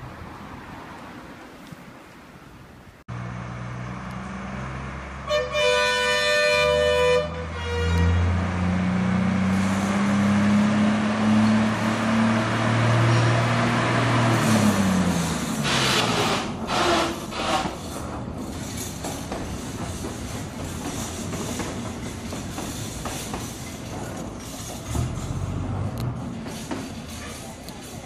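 Sri Lanka Railways rail bus: a horn sounds for about two seconds, then the engine climbs in pitch as it pulls away and drops back. Its wheels then click over the rail joints, followed by steady rolling noise on the track.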